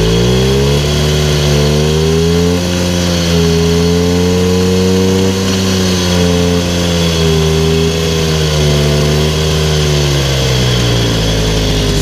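Motobécane N150 moped's AV7 two-stroke single-cylinder engine running steadily after an overhaul, on its correct carburettor; with the right carburettor it runs better. Engine speed climbs slightly in the first couple of seconds, wanders a little, then eases down near the end.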